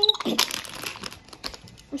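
Crinkly plastic toy packaging being handled and crumpled. It is a quick run of crackles, densest in the first second.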